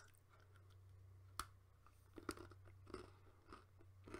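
A person biting into a double chocolate cookie, with one sharp crunch about one and a half seconds in, then chewing it with faint, irregular crunches.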